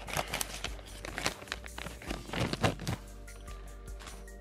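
Plastic soft-bait bag crinkling and crackling as it is pulled open by hand, over quiet background music; the crackles fall away for the last second.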